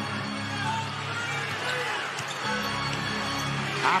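Arena music holding sustained low notes in two long chords, with a short break about two seconds in. It plays over basketball arena crowd noise and short squeaks from the court.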